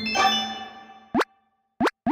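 Short animated intro-card jingle: a bright chime rings out and fades over about a second, followed by two quick pops that rise in pitch.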